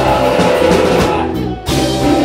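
A rock band playing live, with strummed acoustic guitars, an electric guitar and a drum kit. The sound briefly drops about a second and a half in, then the full band comes back in.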